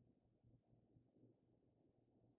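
Near silence: faint room tone, with two faint high ticks in the second half from metal knitting needles being worked through stitches.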